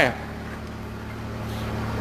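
Steady low mechanical hum in the background, a motor or engine running without change, with the tail of a man's word at the very start.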